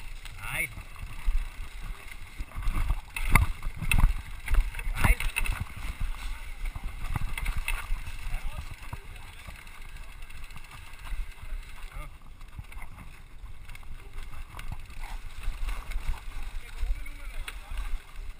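Trail noise of a carbon hardtail mountain bike descending a rough forest singletrack: a steady low rumble from the tyres and wind on the microphone, with several sharp knocks from rocks and roots, loudest a few seconds in.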